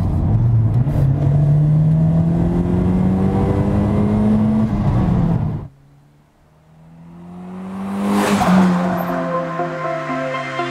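Toyota Celica GT-Four's turbocharged four-cylinder engine accelerating, heard from inside the cabin, its note rising steadily. About halfway through it cuts off sharply; then the car is heard from the roadside, approaching, passing by loudest about eight and a half seconds in, and pulling away.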